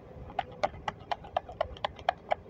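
A run of about nine light, sharp clicks or taps, evenly spaced at about four a second, over faint steady background noise.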